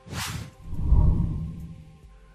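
Logo intro sound effect: a quick swoosh, then a deep low rumble that swells and fades away.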